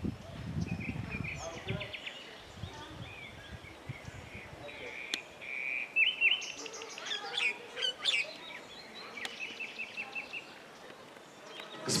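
Small songbirds singing among the trees: repeated chirps and quick trills, busiest and loudest in the middle of the stretch.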